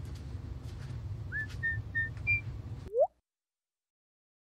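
Four short whistled notes over about a second, followed by one quick upward whistled glide about three seconds in, the loudest sound, over a steady low room hum; then everything cuts off abruptly.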